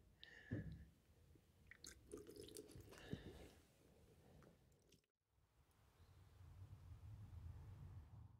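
Near silence, with a few faint, soft little noises and a faint low hum near the end.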